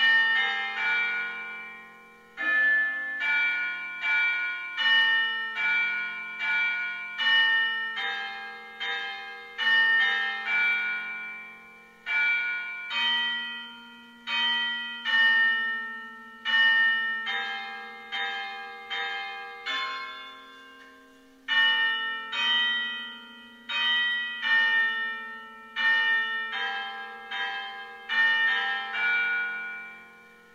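Church bells ringing: a long run of struck notes in close succession, broken by a few short pauses, then dying away at the end.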